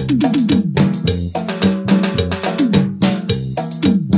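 Upbeat Latin-style music played on a Korg iX300 arranger keyboard: a steady drum rhythm under keyboard chords and bass, with quick runs of falling notes.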